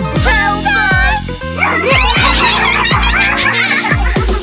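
Upbeat electronic children's song backing music, with a steady deep beat about twice a second and quick, high gliding cartoon squeaks over it.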